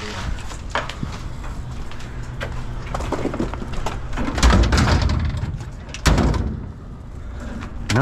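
Knocks and clunks of scrap golf cart chargers and their cords being handled, with a heavy thump about four and a half seconds in and a sharp knock about six seconds in.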